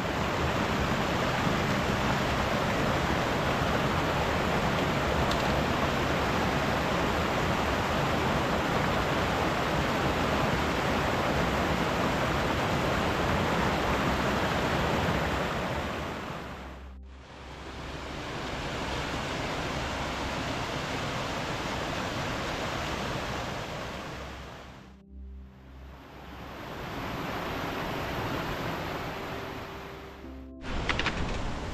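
Mountain stream rushing over boulders close by: a steady, loud rush of water that dips away twice, once about halfway through and once a few seconds before the end, returning slightly quieter each time.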